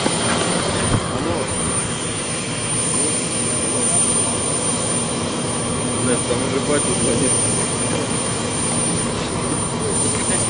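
Steady jet engine noise from a Tu-154 airliner, a continuous even noise without distinct beats.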